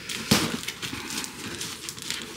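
Cardboard box being gripped and tugged, its sides and flaps scraping and crackling, with one sharper crack near the start.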